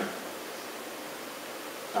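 Steady, even hiss with no distinct tones or strokes.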